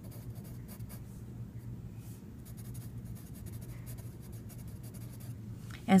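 Wooden pencil writing on lined notebook paper: a run of short, light scratching strokes as words are written out.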